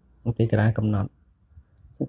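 Speech: a short spoken phrase, then a pause.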